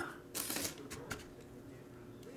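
Handling noise as a football helmet and its plastic packaging are moved: a short rustle about half a second in, a few light clicks around one second, then faint room noise.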